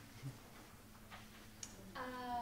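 Quiet lecture-hall room tone with a faint steady hum and a few brief faint clicks.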